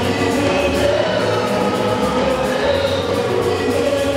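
A choir singing a gospel song, voices holding long notes over a steady musical backing.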